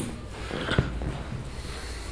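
A pause between a man's sentences: low room hum, a faint breath and one small click a little under a second in.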